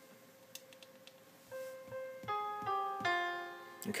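GarageBand for iPad's Grand Piano instrument played on the touchscreen keyboard. After a quiet first second and a half, a run of about five notes from a Japanese scale sounds, each ringing on under the next with sustain switched on.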